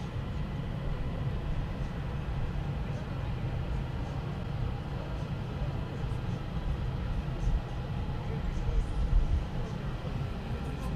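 Steady low rumble and hum of marina ambience, even throughout.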